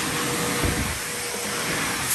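Steady rushing noise of a running motor-driven machine, like a vacuum or blower, with a faint steady hum under it. There is a short low bump a little way in.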